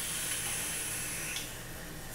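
Vape dripping atomizer firing as it is drawn on: a steady hiss of air pulled through and e-liquid vaporizing on the coil, which cuts off about one and a half seconds in.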